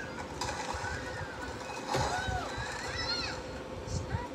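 A high-pitched voice speaking in short, rising-and-falling phrases over a steady hum, with a light knock of the plastic DVD case being handled about two seconds in.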